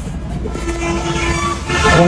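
A horn sounding one long steady note for about a second, with further horn tones near the end, over a steady low rumble of traffic.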